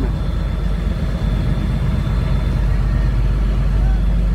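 Coast guard patrol boat under way at sea: a steady low rumble of engine and wind noise.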